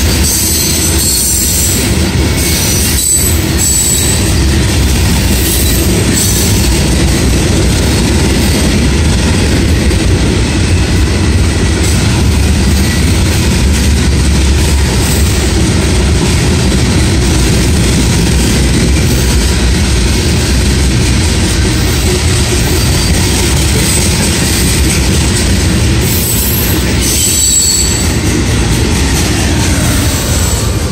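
Freight train tank cars and covered hopper cars rolling past close by, a loud, steady rumble and rattle of steel wheels on rail. Brief high-pitched wheel squeal comes in during the first few seconds and again near the end.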